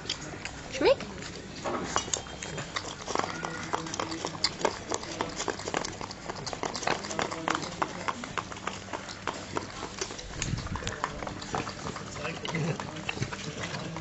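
A dog licking and lapping ice cream out of a paper cup: a quick, irregular run of wet smacking clicks.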